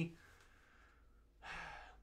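Quiet room tone, then a man's audible breath close to the microphone for about half a second near the end.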